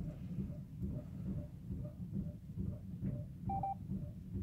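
A short electronic beep about three and a half seconds in, from a phone's QR-code scanner app as it reads the code, over a low background rumble.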